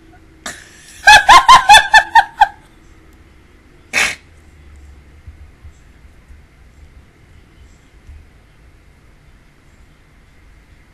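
A woman's high-pitched burst of laughter, about eight quick loud pulses lasting a second and a half, followed about four seconds in by a single short, sharp breath through the nose or mouth.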